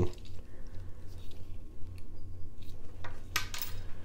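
Faint handling noises: small clicks and clinks of a plastic toy and a screwdriver on a glass-topped table, then a brief rustle of clear plastic packaging near the end, over a low steady hum.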